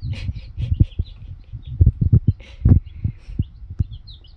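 Baby chicks peeping in short high chirps, over a series of low thumps and knocks, the loudest clustered around two seconds in and again just before three seconds.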